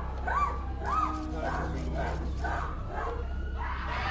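A woman wailing in short, repeated rising-and-falling cries, about two a second, growing fainter after the first couple of seconds: an emotional breakdown, crying and screaming, on hearing a life sentence.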